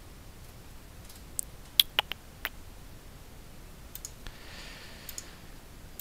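A few sharp clicks and keystrokes on a computer mouse and keyboard, in two short clusters, one about a second and a half in and another about four to five seconds in, over low room noise.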